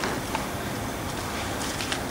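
Steady outdoor background hiss with a couple of faint clicks, one about a third of a second in and one near the end.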